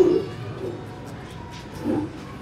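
Pigeon cooing: two short, low coos, one at the start and one near the end.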